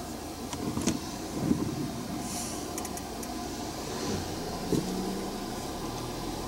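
Car cabin noise at low speed in slow traffic: a steady low engine and road hum, with a few light clicks.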